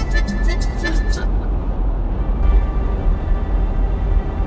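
A song with a singing voice playing inside a moving car, over the steady low rumble of the car on the road. Quick, even percussive ticks sound in the first second, and the music fills out about two and a half seconds in.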